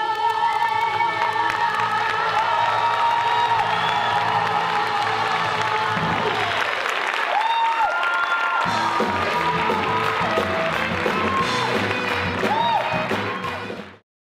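A song's last sung note and music chord held and fading into audience applause and cheering from a live theatre crowd. The sound cuts off abruptly at the end.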